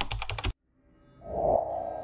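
Typing sound effect: a quick run of key clicks, about a dozen a second, that stops about half a second in. From about a second in, music swells in and grows louder.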